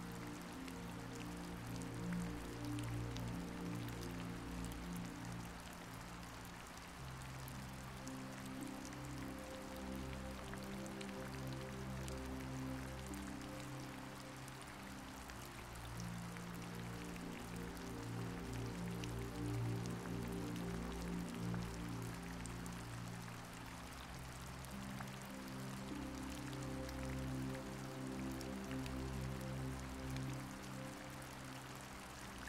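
Soft, slow background music of long-held low chords that change about every eight seconds, over a steady recorded rain with scattered drops pattering.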